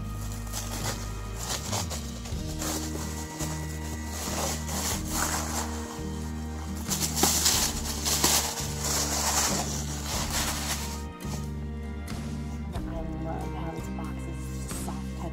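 Background music with a steady bass line plays throughout. About five seconds in, loud crinkling and tearing of paper and plastic wrapping starts, and it fades out near eleven seconds.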